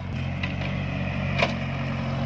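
Mini excavator's diesel engine running steadily as it works in a muddy, flooded field, with two short knocks along the way.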